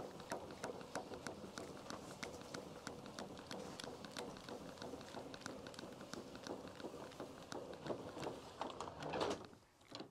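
Roll-out side awning of a VW California being wound back in by its hand crank, the winding gear giving a steady run of light clicks, a few a second, that stops shortly before the end.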